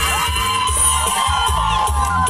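Loud music with a steady bass beat, and a crowd of dancers shouting and cheering over it.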